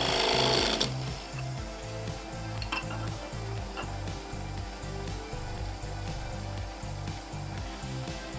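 A parting tool cutting through a spinning wooden tippe top on a lathe for about the first second, stopping suddenly as the top parts off. Background music with a soft steady beat plays throughout.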